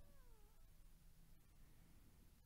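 A faint, short pitched call that falls slightly in pitch and fades out about half a second in, followed by near silence with a low hum.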